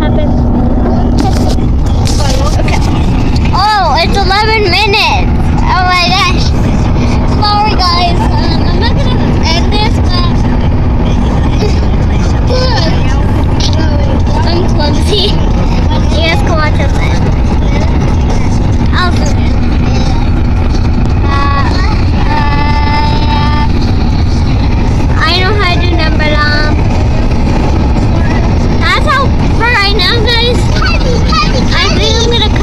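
Loud, steady road and wind rumble inside a car moving at highway speed. High-pitched voices call out over it again and again.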